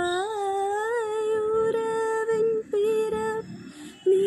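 A woman singing a slow melody unaccompanied, holding one long note with small upward turns in pitch, briefly broken, then falling silent near the end.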